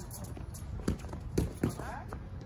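Boxing gloves landing three sharp blows in quick succession, about a second in, over a low steady background rumble.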